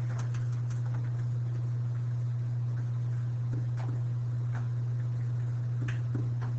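A steady low hum with a few faint scattered taps, which fit pen strokes as numbers are written on the board.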